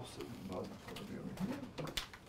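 A woman humming softly to herself in a few low, wavering notes, with a couple of faint clicks.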